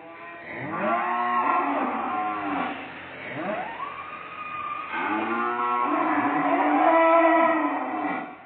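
Cattle mooing loudly: three long moos, each arching in pitch, the last the longest and loudest.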